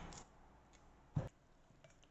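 Quiet handling of cucumber halves over a mesh strainer, with one short knock a little over a second in.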